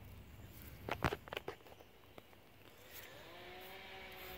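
Hands rustling freshly pulled radishes and their leafy tops over a fabric grow pot of soil, with a few sharp crackles about a second in. Near the end a faint, steady pitched tone comes in.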